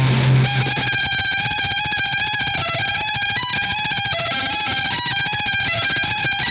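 Eight-string electric violin played through distortion and effects in a dense, rock-style looped improvisation. Held, slightly wavering notes ride over a fast, even pulse, with a brief low note right at the start.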